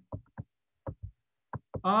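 A series of short, faint taps, about eight of them at uneven intervals: a stylus tapping and stroking on a pen tablet while an equation is handwritten. A man's voice comes back near the end.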